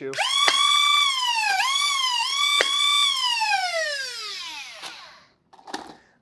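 Flywheel motors of a 3D-printed dual-magazine Nerf-style blaster spinning up to a high whine. The pitch dips twice as darts are fired, with sharp clicks of the solenoid pusher. The whine then winds down in a long falling glide as the flywheels coast to a stop.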